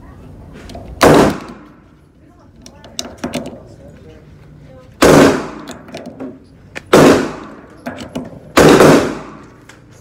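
Four loud gunshots on an indoor shooting range, each with a reverberant tail: one about a second in, then three more in the second half, the last longest. Between them come faint clicks of cartridges being pressed into a pistol magazine.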